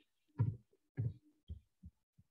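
A few soft, dull thumps about half a second apart, the first the loudest.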